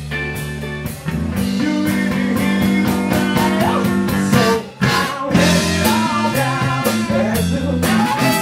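Live blues band playing: electric guitar over bass and drums, with a trumpet joining in about halfway through. The music drops out for a brief break just before the horn comes in.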